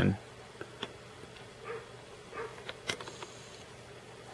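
Quiet small-room tone with a faint steady low hum and a few soft, brief clicks from a handheld phone and camera being handled.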